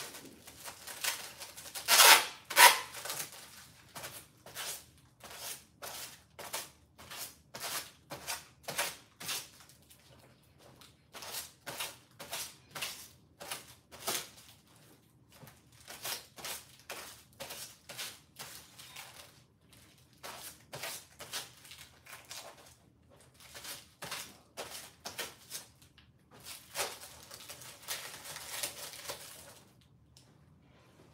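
Hands working at clothes and a small object: a long run of short, crisp clicks, about two a second with short pauses, and longer rustling stretches about two seconds in and again near the end.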